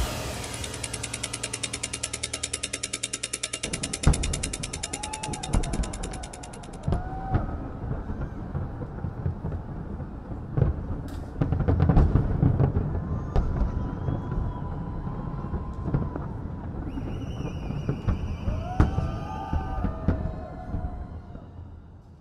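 Rapid clock ticking, about seven ticks a second, that stops about seven seconds in, followed by fireworks bursting with deep booms and crackle, loudest around twelve seconds in.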